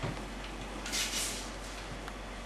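Classroom room tone during a written exam: a low steady hum, a soft knock at the start, and a short rustle, like paper being moved, about a second in.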